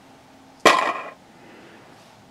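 A single sharp plastic clack with a brief ring, about two thirds of a second in, from the plastic Candy Land spinner being handled.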